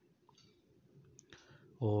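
Metal spatula stirring sugar into hot oil in a large aluminium pot: faint scraping with a few light clicks against the pot.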